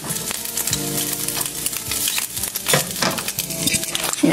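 Diced potatoes sizzling and crackling in a frying pan, with a spatula scraping and stirring them. A faint steady hum sounds underneath for a couple of seconds in the middle.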